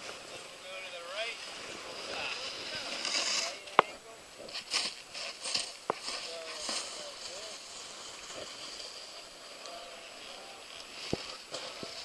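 Faint voices of people talking in the background, with short bursts of rustling noise and a few sharp clicks, the loudest about four seconds in.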